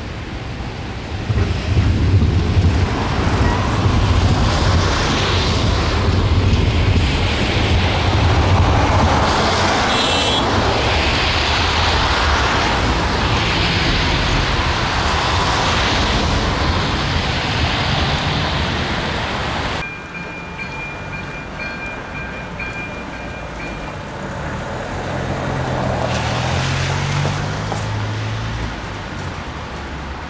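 Cars crossing a level crossing on a wet, slushy road: a low rumble under tyre hiss that swells as each car passes. About 20 s in the sound drops abruptly to quieter street noise, and near the end a low engine hum rises and falls as a train approaches.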